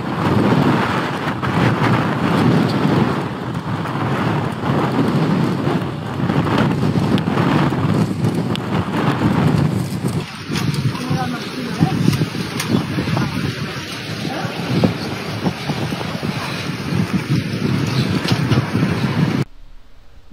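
Wind buffeting the microphone of a phone filmed from a moving road bike riding in a group: a loud, steady rushing rumble that cuts off suddenly near the end.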